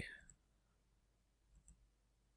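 Near silence, with two faint computer mouse clicks about a second and a half in.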